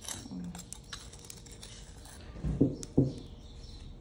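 Table knife scraping butter from a dish and spreading it on a crusty bread roll: light scraping and small clicks, with a couple of brief louder sounds about three seconds in.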